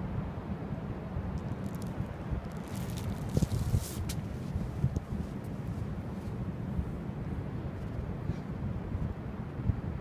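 Wind buffeting the microphone with a steady low rumble, and a short burst of higher rustling hiss about three seconds in.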